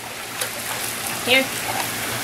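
Water splashing and streaming off a wet German shorthaired pointer puppy as she climbs out of a swimming pool onto the deck, over a steady wash of water noise.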